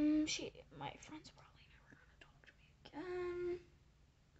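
Whispered talk, with a short, steady, drawn-out voice note at the start and another about three seconds in.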